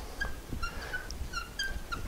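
Dry-erase marker squeaking on a whiteboard as a word is written: a string of short, high squeaks.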